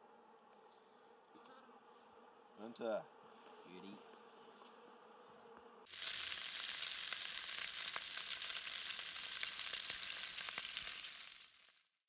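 Venison sizzling in a cast iron pan on a camp stove: a steady frying hiss that starts suddenly about six seconds in and fades out just before the end.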